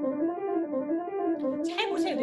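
Yamaha grand piano, the right hand running the five-note scale C–D–E–F–G (do-re-mi-fa-sol) up and down over and over, quickly and evenly, as a legato exercise. Heard through a Zoom call, the notes blur smoothly into one another.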